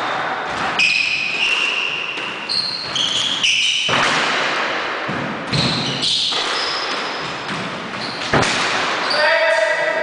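Squash rally: the ball struck by rackets and smacking off the walls several times, with many short high squeaks of court shoes on the wooden floor. Near the end the rally stops and a voice is heard.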